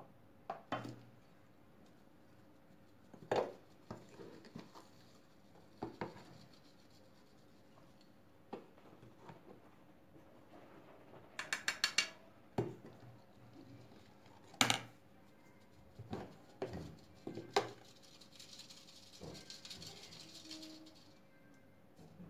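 Plastic scoop knocking against a hand-held flour sieve as flour is scooped and sifted into a plastic bowl of batter: scattered single knocks, a quick run of taps about eleven seconds in, and a soft rustle of flour being shaken through the sieve near the end.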